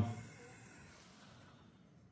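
The tail of a man's drawn-out "um", then near silence: faint room tone.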